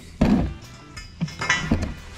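A steel frame tube set down on a concrete floor: a loud thunk just after the start, then lighter knocks about a second and a half in, over background music.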